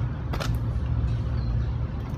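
Steady low rumble of a motor vehicle engine running, with one short click about half a second in.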